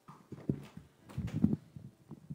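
Irregular muffled knocks and rustling picked up by a clip-on lapel microphone as its wearer moves and bends down, loudest about one and a half seconds in.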